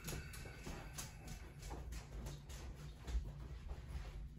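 Quiet room with faint, scattered light clicks and knocks over a low hum.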